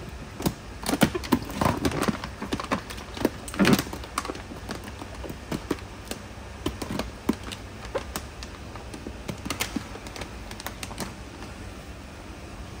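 Clear plastic koi transport bag crinkling and crackling as it is handled and its banded neck twisted, in quick irregular crackles that are densest in the first few seconds and thin out later.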